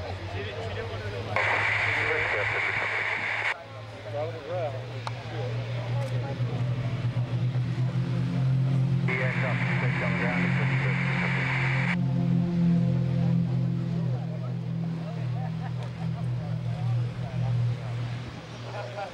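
A formation of piston-engined aerobatic propeller planes with engines running, the low drone growing stronger a few seconds in as they power up and roll for take-off. Two bursts of hiss, each two or three seconds long, cut in about a second and a half in and again about nine seconds in.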